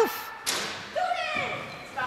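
A single sharp thud about half a second in, followed about a second in by a short drawn-out call that falls in pitch.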